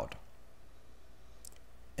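Faint room tone, a steady low hum and hiss from the recording, with one brief, faint click about one and a half seconds in.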